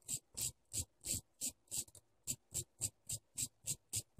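A small steel wire wheel brush rubbed by hand across the edge of a clipper blade in short, even, scratchy strokes, about three a second. The brushing knocks back the burr raised on the blade by sharpening on the waterstones.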